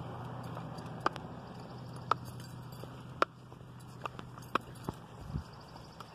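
Footsteps on a concrete sidewalk during a dog walk: a series of sharp taps about a second apart, a little quicker near the end, over a low steady hum that fades out about three seconds in.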